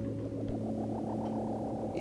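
Sustained low synthesizer drone, with a rapidly pulsing tone that rises in pitch over the first second and then holds steady.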